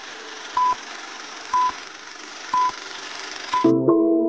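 Film-countdown sound effect: a short beep about once a second over a steady hiss, each beep followed by a click. Music comes in near the end.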